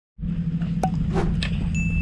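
Steady low outdoor rumble with a few light taps, then near the end a single high chime tone that starts suddenly and rings on: an on-screen caption's pop-up sound effect.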